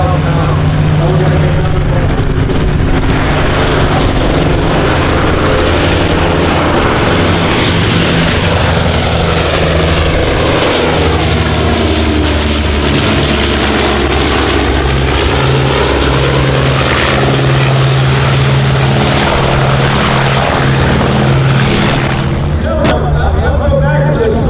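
Martin Mars flying boat's four Wright R-3350 radial piston engines droning in a low pass. The sound builds to its loudest about halfway through as the aircraft goes by, then fades as it banks away.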